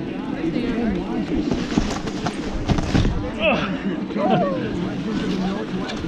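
Indistinct voices of people talking on the slope, with one higher voice calling out about halfway through, over scattered short knocks and scrapes.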